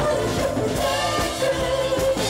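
Live rock band playing a song with singing, acoustic guitar and drums keeping a steady beat.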